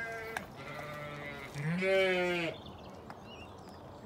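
Sheep bleating: two calls in the first second and a half, then a louder, wavering bleat about two seconds in.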